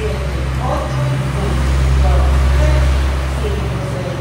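Low, steady engine rumble of a passing road vehicle, swelling about a second in and fading near the end, with faint voices over it.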